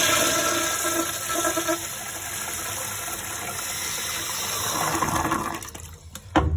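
A Standard toilet with a flushometer valve flushing: a loud rush of water with a faint whine in the first couple of seconds. It runs on steadily, swells briefly, then dies away near the end.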